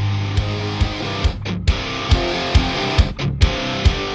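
Hard rock music with no vocals: electric guitar playing over a steady drum beat of a little over two hits a second, with two brief breaks.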